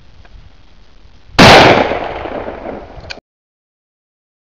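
A single rifle shot about a second and a half in, very loud, its report rolling away over a second or so; this is the shot that drops the second wolf. The sound cuts off suddenly shortly after.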